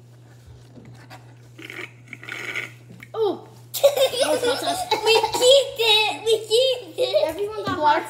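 A child's voice, quiet at first, then from about four seconds in crying out loudly with wavering pitch and laughter: a girl's reaction to a mouthful of hot sauce.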